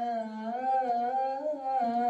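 A single voice chanting a slow, melodic recitation. It holds long notes that waver and bend in pitch, with a short break in the line near the end.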